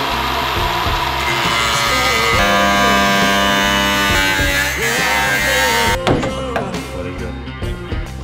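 Rock music with a steady beat over a cordless angle grinder's cut-off disc cutting through the sheet-steel bonnet. The grinding stops suddenly about six seconds in, followed by a few knocks of loose sheet metal.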